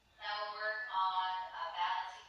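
Music with a singing voice, starting a moment in and moving through a few held notes.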